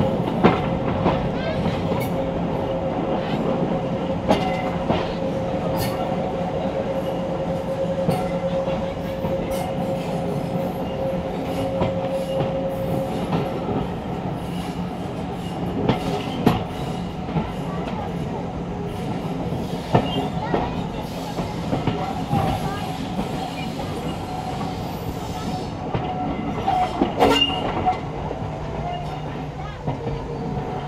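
Heritage railway carriage running along the track, heard from inside: a steady rumble with wheels clicking over rail joints, and a thin steady wheel squeal through the first half that fades out about halfway through.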